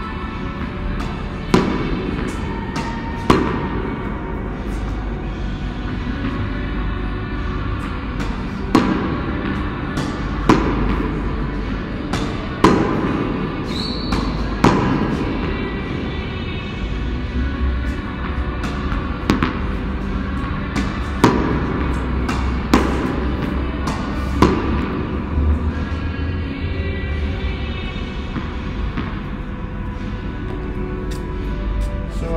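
Background music, with a tennis ball being hit against a wall: sharp echoing racket and ball strikes every couple of seconds, ringing on in a concrete car park.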